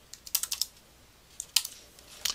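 Typing on a computer keyboard: two short runs of quick key clicks, the first just after the start and the second about three-quarters of the way through.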